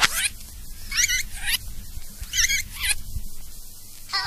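Short, warbling, high-pitched vocal-like samples from a 1992 hardcore rave record, three bursts about a second apart, over a low bass rumble.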